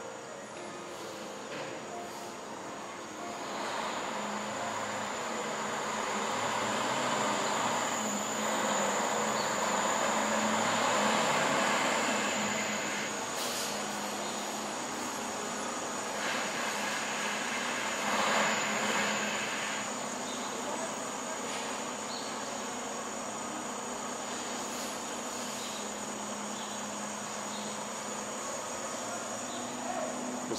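Tractor-trailer semi truck manoeuvring slowly at close range, its diesel engine running with a steady low hum; the noise builds over the first few seconds, is loudest about ten to twelve seconds in, then eases off. A steady high-pitched whine runs underneath.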